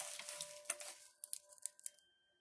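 Crinkling of wrapped candy being rummaged through in a plastic cup as a Laffy Taffy is picked out: a steady rustle in the first second, then a few sharp crackles of the wrappers.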